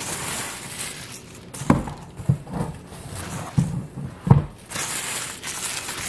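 Paper towels rustling and crinkling as they are handled, with four sharp knocks in the middle, the loudest sounds here.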